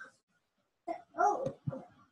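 A dog barking, a few short barks about a second in.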